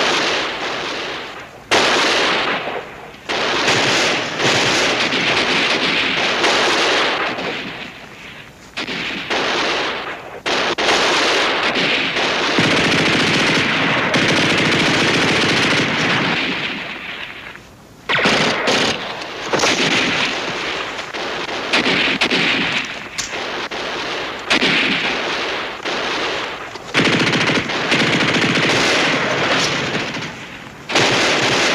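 Machine-gun fire in long bursts with brief lulls between them; the longest burst runs several seconds near the middle.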